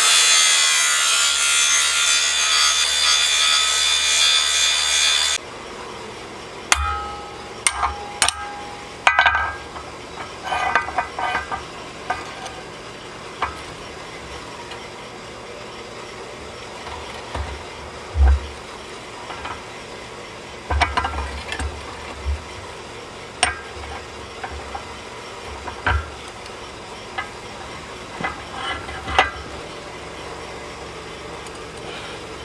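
Large Makita angle grinder grinding the edges of stacked steel plates held in a vise, a loud steady grinding that stops abruptly about five seconds in. After that come scattered metal clinks and knocks as the plates, a locking clamp and the vise are handled.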